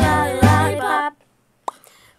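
A young voice sings over a backing track with a deep bass beat. The music cuts off abruptly about a second in, leaving near silence broken by a single faint click.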